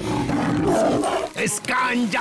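A cartoon tiger's loud, rough roar lasting about a second and a half, then a voice starting near the end.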